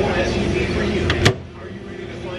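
Microwave oven running with a steady hum that stops with one sharp click a little over a second in, as its door is opened.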